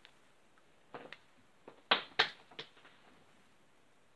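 A coin being flipped and handled: a series of sharp metallic clicks and taps, a pair about a second in and the two loudest close together near the middle, then one weaker tap.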